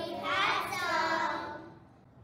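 A child singing a drawn-out phrase that falls in pitch, dying away after about a second and a half.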